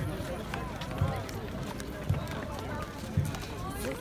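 Outdoor chatter from a walking crowd of marchers, with a short low thump about once a second.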